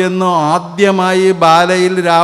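A man chanting a verse in a sustained recitation tone, his voice held almost level on one pitch, with a short break just under a second in.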